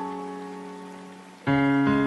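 Slow solo piano: a held chord fades away, and a new low chord is struck about a second and a half in.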